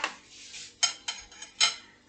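A kitchen utensil clinking against a dish a few times, short sharp taps, while bread is dipped and turned in beaten egg.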